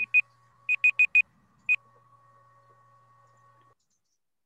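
Online countdown timer's alarm going off as it reaches zero, signalling that the two-minute time limit has run out: quick high beeps, all at one pitch, in groups of four. It stops after one more beep, a little under two seconds in, when the timer is reset.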